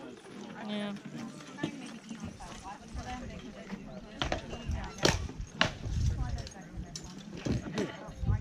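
SCA armoured combat: rattan weapons striking shields and armour in a handful of sharp, hollow knocks, the loudest about five seconds in, with spectators talking around the list.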